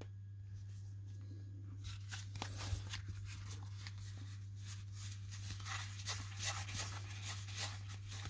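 Baseball cards being flipped through by hand, one after another: faint quick flicks and slides of card stock, starting about two seconds in, over a low steady hum.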